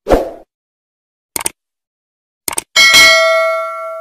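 Subscribe-button animation sound effects: a short thump, a quick click about a second later and another about a second after that, then a bell ding that rings on and fades out.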